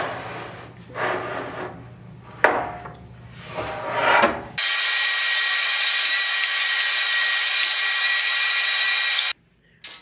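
MDF spoilboard sliding and scraping across the steel table frame of a CNC router in uneven strokes, with one sharp knock about two and a half seconds in. About halfway through, a vacuum starts up suddenly and runs steadily through its hose with a hiss and a faint whine over the dusty bed, then cuts off abruptly shortly before the end.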